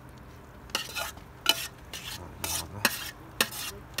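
A metal spoon scraping cooked food out of a stainless steel pot onto pavement: a string of about seven short, irregular scrapes starting under a second in.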